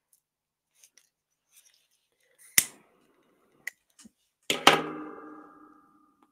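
A sharp click, two small ticks, then a knock with a short ringing tone that fades over about a second.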